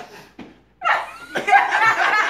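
A small group of people laughing together, the laughter breaking out about a second in after a brief lull.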